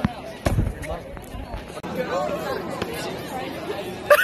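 Voices talking amid a crowd of students chattering, with a low thump about half a second in.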